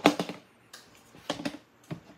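Clear plastic storage tub being handled: a sharp plastic clack at the start, then a few lighter clicks and knocks as the tub and its lid are moved.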